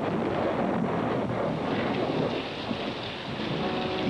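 A loud, dense rushing and rumbling noise, already going at the start, holding steady.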